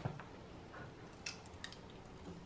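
A few faint, sharp clicks and a soft squish as a wet boiled peanut shell is cracked open with the fingers and the nut is eaten.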